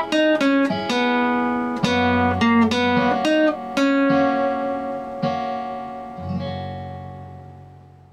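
Nylon-string classical guitar fingerpicked: a quick single-note melody for about four seconds, then a few final notes over a bass note left to ring and slowly fade out.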